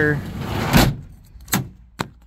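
A sliding rush across the pickup's bed cover that swells to a short loud peak, followed by a few sharp clicks, like a sliding panel or latch being moved.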